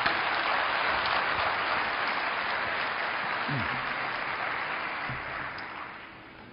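A large audience applauding, the clapping slowly dying away toward the end.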